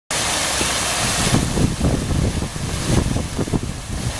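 Artificial waterfall pouring down a rock wall, a steady rushing splash, with irregular low rumbles underneath.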